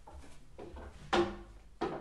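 Two sharp knocks, each with a brief ring after it, a little over half a second apart, with faint shuffling before them.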